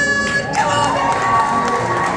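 Upbeat background music with a crowd cheering and children shouting; a loud held vocal tone ends just after the start, and the cheering swells from about half a second in.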